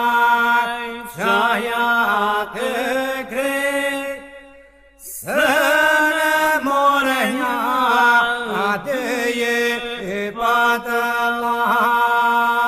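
Albanian iso-polyphonic folk singing by unaccompanied men's voices: an ornamented, wavering melody sung over a steady held drone (the iso) from the other singers. The singing dies away briefly a little before the middle, then comes back in full.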